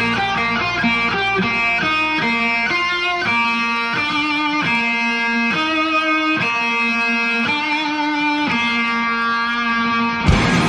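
Electric guitar playing alone in a live rock concert, a repeating phrase of single ringing notes with no band behind it.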